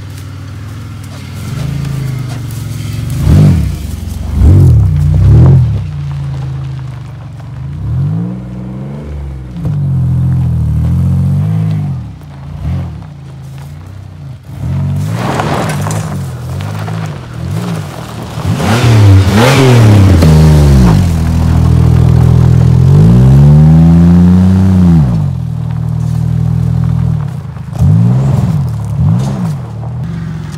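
Pontiac Grand Prix GT's V6 engine revved hard again and again, its pitch climbing and falling with each rev, with one long, held rev about three-quarters of the way through.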